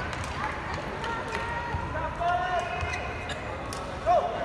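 Badminton rally on an indoor court: the shuttlecock is struck back and forth with sharp racket clicks, with short sneaker squeaks on the court floor and nearby spectators talking under it.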